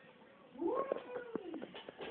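A cat meowing once: a single drawn-out call of about a second that rises, holds, then falls in pitch, with a few light clicks around it.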